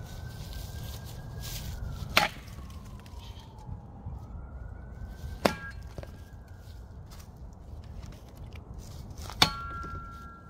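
Three chops of the Cold Steel B.M.F.D.S. shovel's steel blade into a small sapling, spaced about three to four seconds apart. The second and third strikes leave a short metallic ring from the blade.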